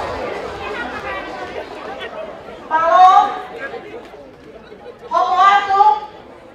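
Low crowd chatter in a large hall, broken by two short, loud phrases from a voice amplified over a microphone, one about halfway through and one near the end.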